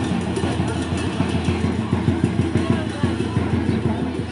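Street procession noise: drumming and music mixed with voices in the crowd.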